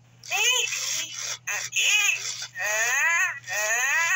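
1999 Autumn Furby talking in its high-pitched electronic voice: about four short chirpy phrases, each rising and falling in pitch.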